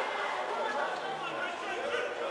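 Indistinct chatter of several people's voices, overlapping, from spectators near the microphone.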